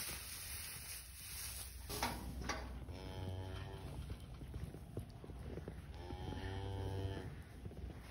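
Miniature cow mooing twice, each moo steady and about a second long, the second about three seconds after the first.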